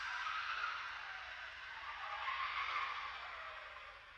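Electronic noise texture from an electroacoustic composition: a smeared band of noise that swells about two to three seconds in, with a slowly gliding pitch, and then fades away.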